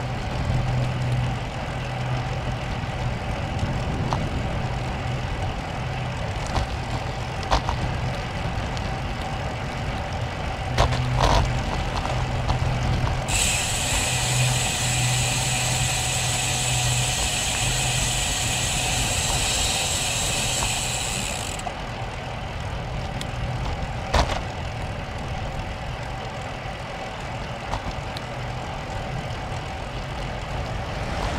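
Steady wind rush on the microphone and tyre noise from a road bike riding along, with a few sharp knocks. A high buzz starts abruptly about halfway through and cuts off about eight seconds later.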